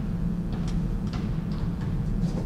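Steady low room hum with a few faint, light clicks scattered through it.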